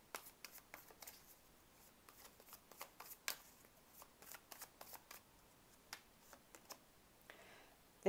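Tarot card deck shuffled by hand: faint, irregular flicks and taps of the cards.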